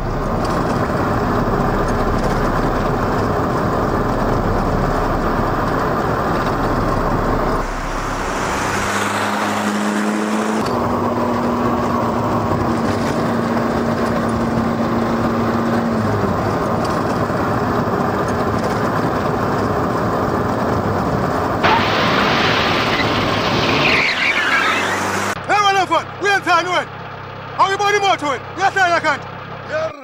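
A car driving fast on an open road, its engine and road noise loud and steady. Near the end a man's voice calls out several times.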